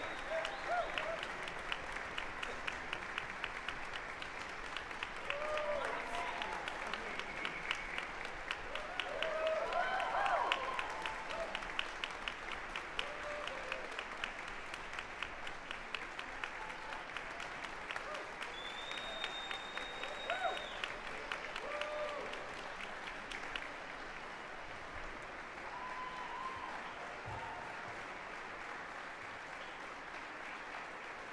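Audience applauding, with scattered shouted cheers in the first third and one held high whistle a little past the middle; the clapping thins toward the end.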